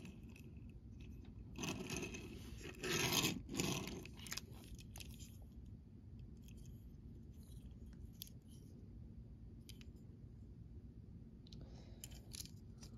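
Hot Wheels Turtoshell die-cast toy car (metal base, plastic body) scraping and rustling as it is rolled and handled on a wooden tabletop, with two louder stretches in the first four seconds, then scattered light clicks as it is turned in the fingers.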